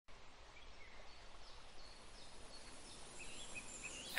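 Faint outdoor background hiss with a few short, faint bird chirps.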